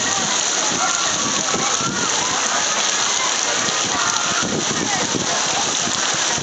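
Steady rushing and splashing of water on a water park lazy river, with faint children's voices calling over it.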